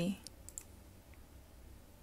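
A few faint computer mouse clicks in the first second, over a low steady hum.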